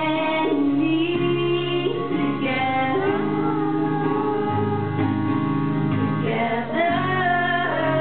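A woman singing a song live, holding long notes that glide between pitches, accompanied by her own acoustic guitar.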